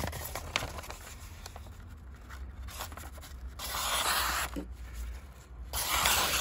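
A folding knife's stonewashed Böhler K110 steel blade slicing through a sheet of paper: some paper rustling, then two smooth cuts of about a second each, the first about three and a half seconds in and the second just before the end. The cuts run clean with no snagging, the sign of a very sharp edge.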